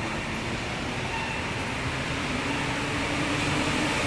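Steady urban rumble of traffic at a bridge, with a faint low hum that slowly grows louder.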